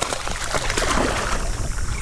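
Hooked speckled trout thrashing at the water's surface close by, a run of splashing.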